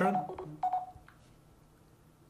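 Two short, single-pitched beeps from a Samsung Galaxy Note 8's speaker within the first second. They are the Direction Lock's sound feedback, one beep for each swipe direction drawn.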